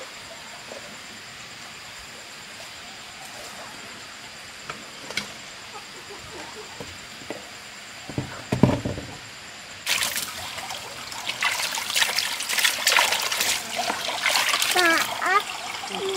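A dull thump, then water splashing and sloshing into a red plastic basin, loud and irregular, starting about ten seconds in.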